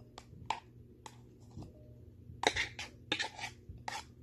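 Cut strawberries dropping into a bowl from a plastic cup while a plastic spoon scrapes and taps them out: a string of light knocks and clinks, busiest about two and a half to three and a half seconds in.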